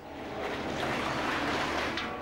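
Demolition excavator working a heap of wrecked metal cladding and panels, a steady scraping noise that swells and then eases off near the end.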